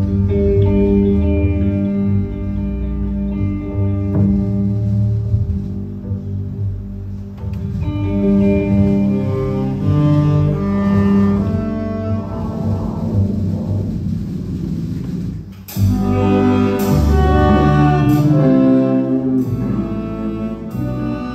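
Live instrumental band with upright double bass, saxophones, electric guitars and drum kit playing. Sustained horn and bass notes lead. About three-quarters of the way through the music drops out briefly, then returns louder with cymbal hits about once a second.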